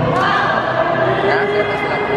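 Singing voices over background chatter, with one note held for about the second half.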